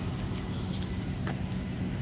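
A vehicle engine idling nearby, a low steady rumble, with a single light click partway through.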